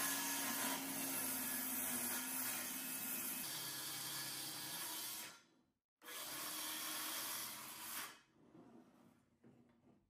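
Cordless circular saw cutting a thin strip off the bottom edge of an old painted wooden door, running steadily. It stops abruptly about five seconds in, runs again for about two seconds, then stops.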